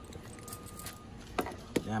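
Quiet background with a faint thin tone, then two sharp clicks in the last second.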